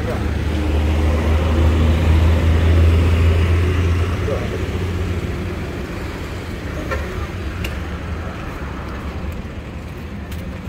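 Street traffic: a heavy vehicle's low engine rumble swells over the first two or three seconds, then fades by about five seconds in, over steady roadway noise.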